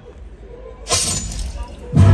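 Horror film soundtrack over theater speakers: a low rumble, then a sudden sharp crash about a second in, fading quickly, with loud music coming in at the very end.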